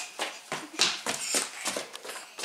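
A small child's quick running footsteps on a hard floor, short uneven thuds about three a second.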